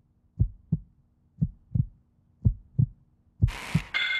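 Heartbeat sound effect: low lub-dub double thumps, about one pair a second, four pairs in all. A hiss swells in near the end.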